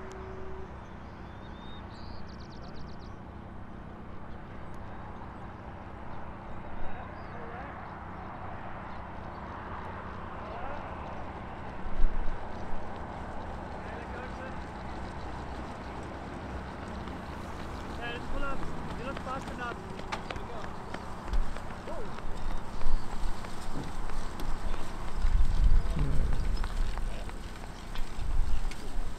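Open-air runway ambience with distant, indistinct voices of a ground crew and the footfalls of people running alongside, louder and rumbling toward the end.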